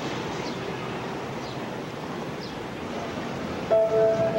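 Steady outdoor background noise with a few faint high chirps, then soundtrack music comes in suddenly near the end.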